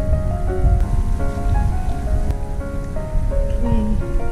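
Piano background music, single held notes changing every half second or so, over a loud low rumbling, crackling noise.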